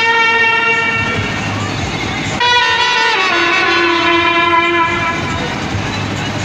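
Indian brass band of trumpets and saxophone playing long sustained chords. A fresh, louder chord comes in about halfway through.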